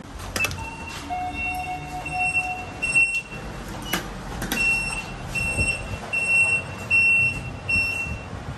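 Lift car's electronic panel beeping: held high tones with a few clicks early on, then a run of short high beeps about two a second, as buttons on the car operating panel are pressed and the lift doors close.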